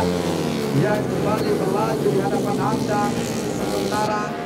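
Racing four-stroke 130 cc underbone motorcycles revving hard through a corner, engine pitch climbing and dropping as they accelerate. A voice is heard over the engines.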